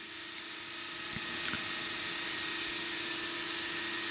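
Steady hiss with a faint low steady hum, slowly getting a little louder; one or two very faint ticks.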